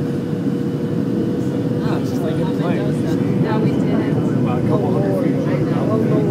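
Steady cabin noise of a jet airliner in flight, heard from a window seat: a dense roar of engines and airflow with a steady hum running through it.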